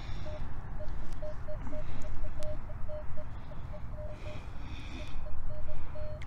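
Gloved fingers rubbing and crumbling a clump of frozen sandy soil to free a coin, a faint scratchy rustle over a low rumble. A metal detector's single-pitch beep sounds on and off in the background.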